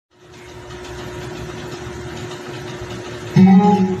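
Steady background noise with a faint hum. A little over three seconds in, loud guitar music begins, the accompaniment intro of a song.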